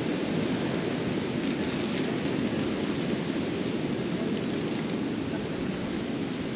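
Steady rushing of ocean surf mixed with wind blowing across the microphone, an even noise with no distinct breaks.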